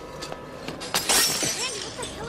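A glass bottle smashing about a second in: a sharp crack, then a brief burst of breaking glass.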